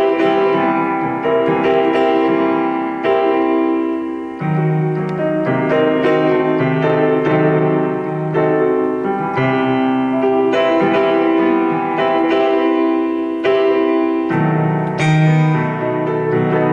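Electronic keyboard in a piano voice playing two-handed chord practice: sustained chords changing about every second or so, with bass notes underneath.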